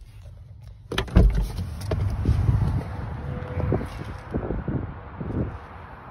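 Handling noise from a phone being moved around inside a car: a heavy thump about a second in, then rustling with light knocks that dies down near the end.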